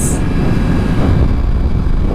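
Steady wind noise on a helmet-mounted camera's microphone over the running engine of a Kawasaki ZX-10R inline-four sport bike riding at a steady speed.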